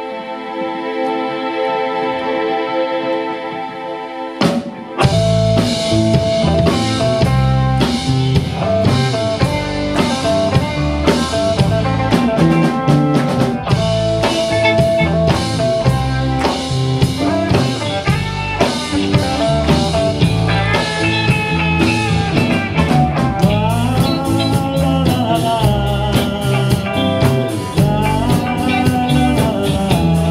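Live rock band playing an instrumental intro: sustained string-like keyboard chords, then about four and a half seconds in a sharp hit brings in drum kit, bass and electric guitars in a steady groove. Over the second half a lead melody with bending pitches plays above the band.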